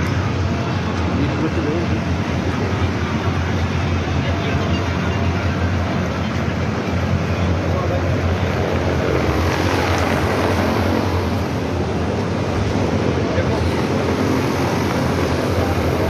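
Steady, loud fan noise from large evaporative air coolers, with faint, indistinct loudspeaker speech underneath.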